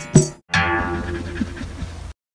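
Intro music: a last percussive beat near the start, a brief break, then a held chord that rings on.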